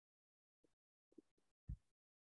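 Near silence with a few faint, short soft thumps; the loudest is a single low thump near the end.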